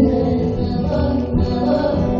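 Live acoustic music: a woman singing held notes to acoustic guitar accompaniment.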